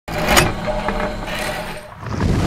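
Sound effect of an animated channel intro: a sharp hit about half a second in over a continuous rumbling noise that fades toward the end.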